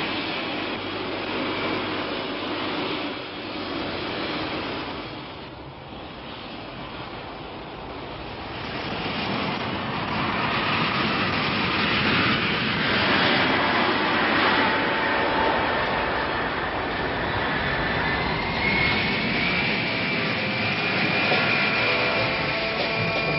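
Boeing 747 jet engines (Pratt & Whitney JT9D turbofans), a steady roar of jet noise that grows louder from about halfway through. In the last few seconds a high whine rises in pitch over the roar.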